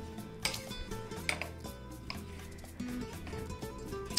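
Chef's knife dicing tomato on a marble cutting board: irregular sharp knocks of the blade against the stone, over background music.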